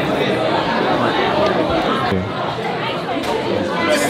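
Chatter of many people talking at once, overlapping voices with no single clear speaker, in a lecture hall.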